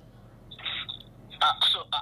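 A short pause, then a man's voice starting to speak about a second and a half in.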